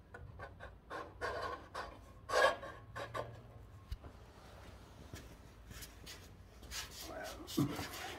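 Soft scraping and scattered clicks of a steel steering shaft being worked up through its hole in a garden tractor's frame, with a man's breathing as he works in an awkward spot.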